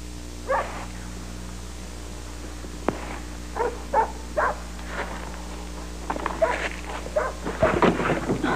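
A dog barking in short single barks: one about half a second in, three more in quick succession around the fourth second, then a denser run near the end. There is a single sharp click just before the run of three, all over a steady low hum.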